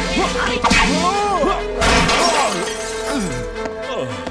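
Cartoon fight sound effects over an action music score: sweeping swishes of spinning fighting sticks, sharp hits, and a crash about two seconds in.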